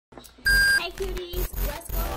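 A single short, high electronic beep about half a second in, followed by a brief low voice-like sound.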